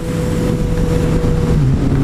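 Yamaha FZ-09's inline three-cylinder engine running through a Black Widow carbon full exhaust at steady cruising revs, with wind noise over it. About one and a half seconds in, the engine note drops to a lower, steady pitch.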